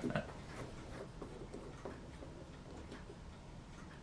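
Faint clock ticking.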